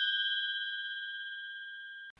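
A bell-like ding ringing out, a few clear high tones fading slowly and steadily, then cut off abruptly at the very end.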